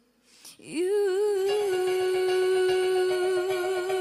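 A singer in a Christmas song holds one long note after a brief near-silent pause. The voice slides up into the note, then holds it with a light vibrato, and backing instruments come in under it about a second and a half in.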